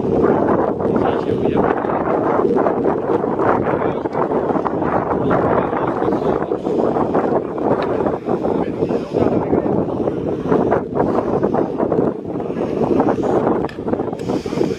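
Wind buffeting the phone's microphone in a steady, loud rumble, with the voices of an outdoor crowd under it.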